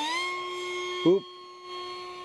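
Whine of an RC park jet's Fasttech 2212/6 2700 Kv brushless outrunner motor spinning a three-bladed carbon fiber prop in flight. The note climbs briefly right at the start, as the throttle comes up, then holds steady.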